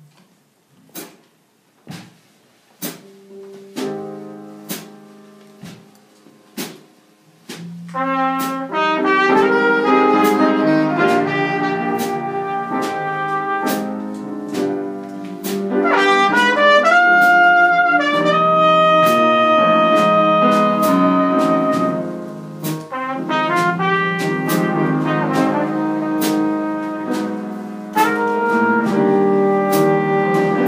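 Teenage jazz combo playing a slow ballad with the trumpet featured. It opens with steady light taps on the drums about once a second and soft piano chords. About eight seconds in, the trumpet and band come in with long held notes.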